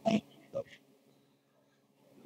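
Two brief wordless vocal sounds from a man, one at the start and a smaller one about half a second in, then quiet room tone.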